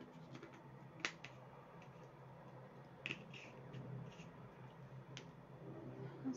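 Quiet room with a faint low hum, broken by three short sharp clicks about two seconds apart, the first the loudest: small taps of hand-held tools or jars on a tabletop.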